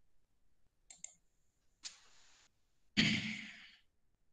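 Faint computer keyboard and mouse clicks as a date is typed into a spreadsheet cell, then a short breathy vocal sound like a sigh about three seconds in, the loudest moment, fading out within a second.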